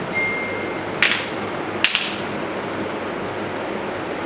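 A break in the music: steady room noise with two sharp smacks, about a second in and a second apart.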